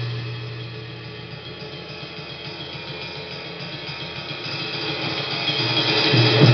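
Acoustic drum kit played freely in improvised noise music. The playing drops to a quieter stretch of rapid light strokes on cymbals and drums, then builds steadily back up in loudness toward the end.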